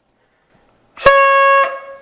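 A single loud horn blast about a second in: one steady, unwavering note held for about two-thirds of a second, starting abruptly and then fading out.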